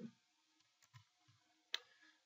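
Near silence, broken near the end by one sharp click of a computer mouse.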